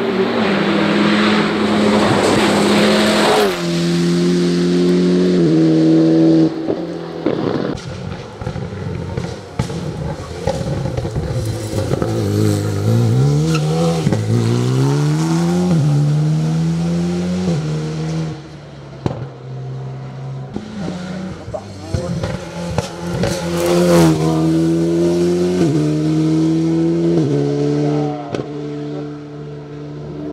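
Alpine race car's engine pulling hard up a hillclimb, its pitch climbing and then stepping down at each upshift, several gear changes in a row. About halfway through it drops to a low pitch for a slow corner and pulls away again through the gears, with a few sharp crackles between shifts.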